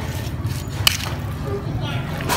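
A metal spoon stirring and scraping through wet ground fish and meat on a ceramic plate, with one sharp click of the spoon against the plate about a second in, over a steady low hum.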